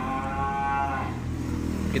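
A young Simmental bull moos once, a single long call that fades out about a second in, over a steady low hum.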